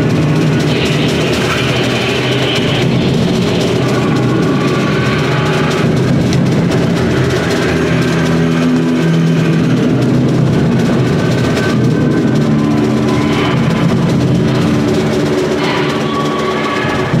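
Free jazz ensemble playing live: a drum kit under several held, overlapping pitched tones from other instruments, dense and unbroken.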